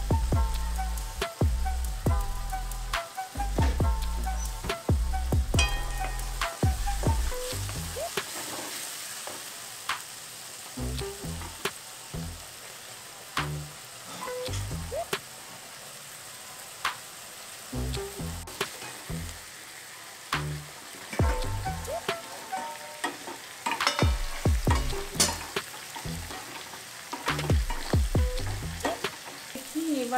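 Onion and tomato masala sizzling in oil in an aluminium kadai, with a wooden spatula scraping and knocking against the pan again and again. Background music plays over the first several seconds and again near the end.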